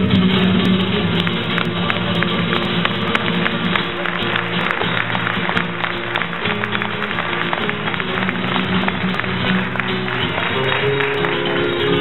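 Flamenco guitar playing an instrumental passage between sung verses, with many sharp percussive clicks through it.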